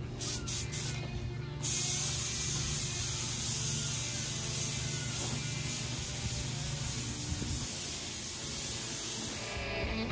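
Compressed-air paint spray gun hissing steadily as it lays a light first dust coat of paint. The hiss starts suddenly about two seconds in and cuts off just before the end, over background rock music.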